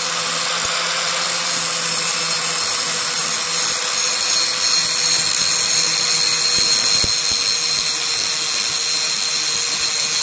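Drill Master 4-1/2-inch angle grinder running steadily under load, its disc grinding steel at the centre of a lawn tractor wheel, with a steady motor whine over the grinding noise.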